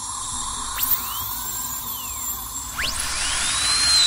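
A dental drill whining steadily, with higher whines that sweep up and down in pitch. It grows louder toward the end.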